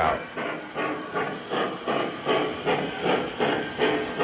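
Model steam locomotive running, its chuffing a steady rhythm of hissy puffs about three a second, with the passenger cars rolling on the track.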